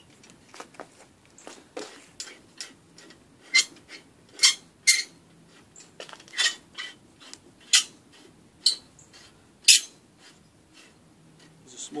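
Rusty threaded steel rebar coupler being turned by hand on its bar, giving a series of short, sharp metallic squeaks and scrapes at irregular intervals, roughly one or two a second. The squeaking comes from rust on the coupler's threads.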